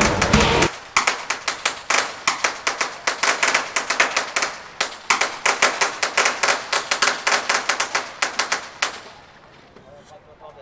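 A string of firecrackers crackling, a rapid, irregular run of sharp pops that goes on for about eight seconds and then stops. Loud music cuts off under a second in, just before the pops begin.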